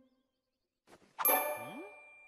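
Near silence, then a little over a second in a sharp metallic ding that rings on and fades, leaving a single high tone; it is a cartoon sound effect.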